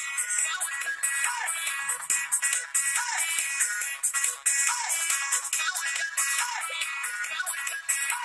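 Band music playing, thin and bright, with almost nothing in the bass.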